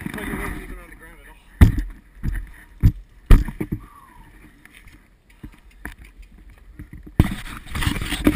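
Handling noise from a helmet-mounted action camera being taken down. A handful of sharp knocks in the first few seconds, then scraping and rubbing against the microphone near the end, with muffled voices at the very start.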